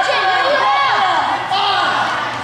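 Several voices of spectators and players calling out and talking over one another in a school gym during a basketball game, none of them clear words.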